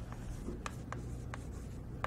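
Writing on a board: a few short taps and scratches of the writing stroke, over a steady low room hum.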